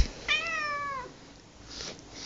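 A domestic cat meowing once, a single call under a second long that sinks slightly in pitch toward its end.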